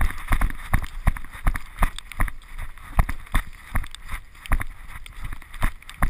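Running footsteps through wet grass, heard through a body-worn camera as a steady series of thumps, about two to three strides a second.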